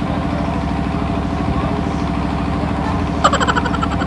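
Steady low engine hum running unchanged, like an idling motor. About three seconds in, a short burst of laughter.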